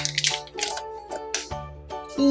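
Foil seal of a Kinder Joy egg being peeled back, crinkling in several short crackles, over background music with steady held notes.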